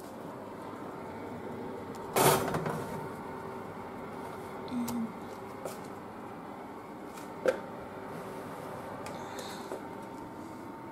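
Metal baking pan set onto a wire oven rack and slid in: a loud clatter about two seconds in, a few lighter knocks, and a sharp click about seven and a half seconds in, over a steady background hum.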